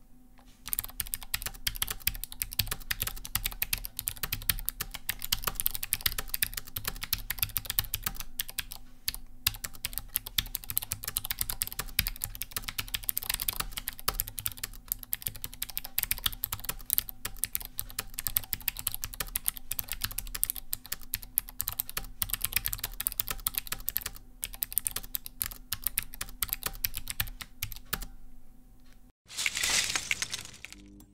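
Continuous two-handed typing on a Vissles LP85 low-profile keyboard with optoelectric scissor switches: a dense, fast stream of key clicks with brief pauses, starting about a second in and stopping near the end.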